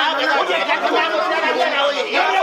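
Several men's voices talking loudly over one another.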